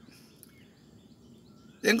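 Faint outdoor background hush with a few faint, short bird chirps. A man's speech starts again near the end.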